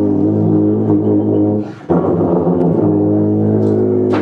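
A large hellikon horn with a wide flared bell played in two long, low held notes, with a short break between them about two seconds in.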